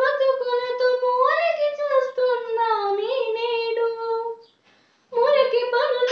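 A girl singing a patriotic song solo and unaccompanied, holding long notes that waver and slide in pitch. She breaks off briefly for a breath about four and a half seconds in, then carries on.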